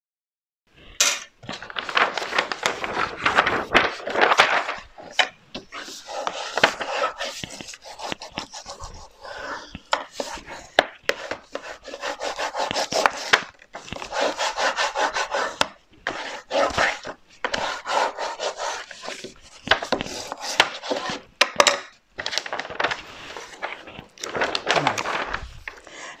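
Hands rubbing and smoothing glued decorative paper over greyboard covers: a papery swishing in repeated strokes that come and go, with a few light clicks, starting about a second in.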